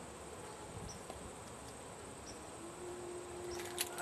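Faint outdoor background with a steady, thin, high-pitched whine, and a few sharp clicks near the end.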